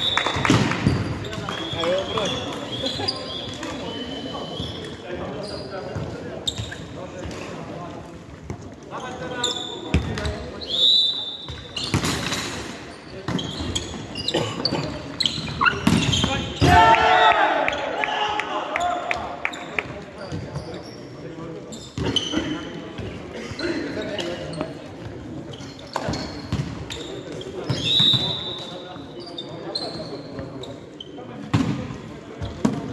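Indoor volleyball play in a reverberant sports hall: the ball struck and landing with sharp knocks, trainers squeaking briefly on the wooden floor, and players calling out, loudest about two-thirds of the way through.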